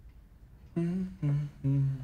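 A man humming a slow tune with his mouth closed: a series of held notes, starting about three-quarters of a second in, that step up and down in pitch.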